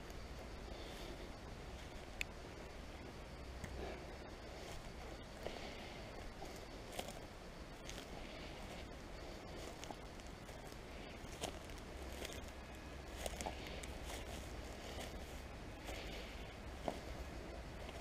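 Footsteps on a dry grass and straw path: soft, irregular crunches and ticks over a low steady rumble.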